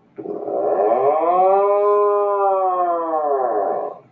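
Recorded seabird call played back: one long, drawn-out call that rises in pitch and falls again, lasting nearly four seconds.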